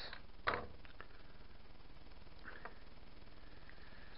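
Quiet room tone with a steady low hum, broken by a short burst about half a second in and a few faint clicks around two and a half seconds in, from 3D-printed plastic parts and tools being handled and set down on a wooden workbench.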